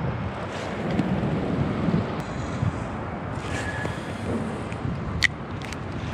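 Wind buffeting the microphone over a steady low rumble of traffic, with one sharp click about five seconds in.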